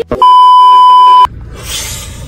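A single loud, steady electronic beep tone lasting about a second, cutting off sharply, followed by the low rushing hum of a car interior.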